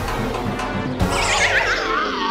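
A horse whinny sound effect, a wavering cry falling in pitch that starts about a second in after a sharp click, played over background music as a comic reaction sting.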